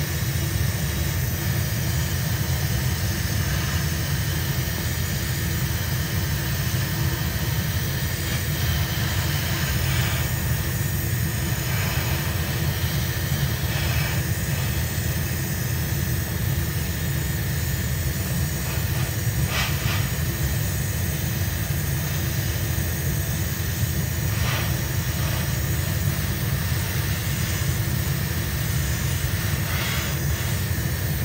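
Steady low drone of a hobby spray booth's exhaust fan running, with the airbrush hissing in a few short bursts as it sprays 2K clear coat onto a slot-car body.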